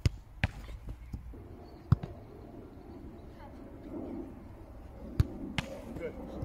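Footballs being kicked and hitting a goalkeeper's gloves and the ground: a sharp thump right at the start, then about four more thumps, two of them close together near the end.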